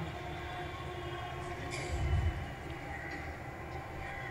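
Steady low rumble of background noise with faint steady tones over it, and a dull low swell about two seconds in.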